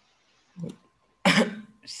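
A single short cough about a second in, sudden and loud, then fading quickly; before it the line is nearly quiet.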